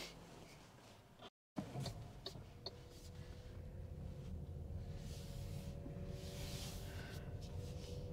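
Quiet cabin of an MG5 EV electric estate car pulling away: a low road rumble that slowly builds, with a faint steady hum from the drivetrain and a few small clicks. It sounds very nice and smooth, with no engine note. The sound cuts out briefly about a second in.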